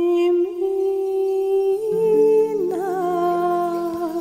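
Music: a woman's voice hums one long held note, rises to a higher note about two seconds in and wavers, over sustained chords that enter at the same time.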